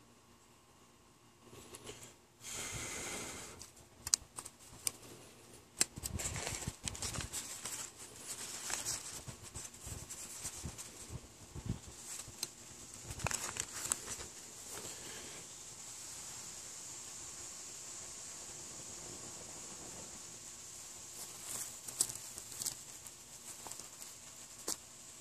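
Crinkling and rustling of a plastic candy-bar wrapper being handled and crumpled by hand, with several sharp clicks in the first half. It settles into a fainter, steady hiss in the second half.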